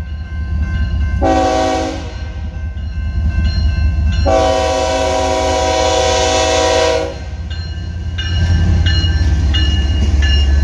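BNSF diesel freight locomotive's chime horn sounding a short blast about a second in, then a long blast of nearly three seconds, over the steady rumble of the approaching train. After the horn stops, the locomotives' engine and wheel rumble grows louder as they pass close by.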